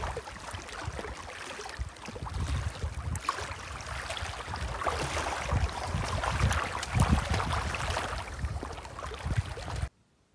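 Lake water lapping and sloshing on a rocky shore right by the microphone, with the splashing of a person swimming, over an uneven low rumble. It cuts off suddenly near the end.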